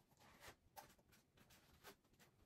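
Near silence, with faint short scratchy rustles about every half second: small handling sounds of someone working at a dresser.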